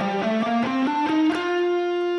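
Electric guitar, a Stratocaster, playing a single-note scale run that steps upward in pitch, note by note, then settles on one long held note for the last half of the run.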